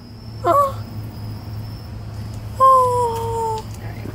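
A cat meowing twice: a short rising meow about half a second in, then a longer, louder, steady meow near the end that drops slightly in pitch.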